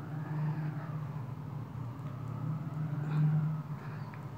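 A motor running with a low, steady hum that swells to its loudest about three seconds in.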